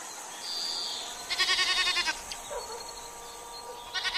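A goat bleating twice, a quavering, rapidly pulsing call about a second in and again at the very end. A brief high whistle comes before it, about half a second in.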